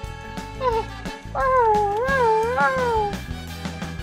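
Meowing over background music: a short meow, then a long, wavering meow.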